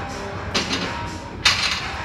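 Gym background with faint music and two sharp clanks of equipment, the second and louder about one and a half seconds in.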